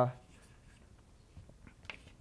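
Chalk writing on a blackboard: faint scratching strokes with a few light taps of the chalk.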